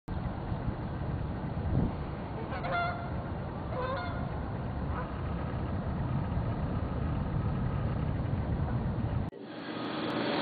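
Outdoor ambience with a steady low rumble, broken by two short bird calls about three and four seconds in and a fainter one near five seconds. The sound cuts off abruptly shortly before the end.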